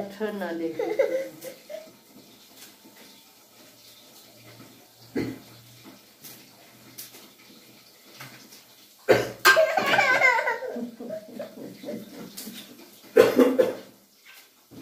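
A toddler laughing and babbling, with an adult laughing along. A quiet stretch in the middle is broken by a single knock, then loud laughter and voices return about nine seconds in, with another short burst near the end.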